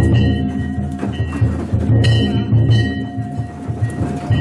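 Danjiri festival music: a large taiko drum beaten inside the float in a steady rhythm, over the continuous ringing of brass hand gongs.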